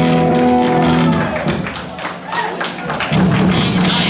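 Amplified electric guitar holding one note for about a second, then a run of short taps and scrappy strums, with another note ringing out near the end.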